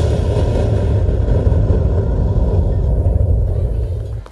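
A loud, steady low bass rumble from stage loudspeakers, the closing sustained bass of a dance track. It cuts off just at the end.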